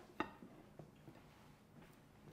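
Near silence: faint room tone, with one brief click just after the start.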